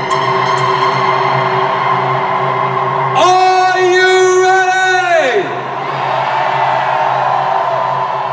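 Electronic dance music played live through a concert sound system, in the build-up just before the drop, with the bass taken out and only sustained synth tones left. A few seconds in, a long held note rises over the music and slides down in pitch as it ends.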